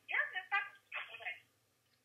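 A voice speaking over a telephone, thin and cut off above the speech range as through a phone line, for about a second and a half before it stops.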